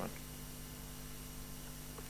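Steady low electrical mains hum with faint hiss, picked up through the panel's microphone and sound system.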